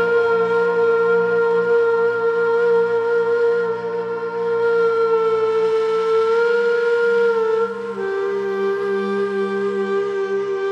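Ney (end-blown cane flute) holding one long breathy note that wavers slightly, then stepping down to a lower note near the end, over a low steady drone.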